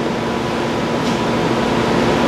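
Steady hum and hiss of a room's air conditioning, with a faint click about a second in.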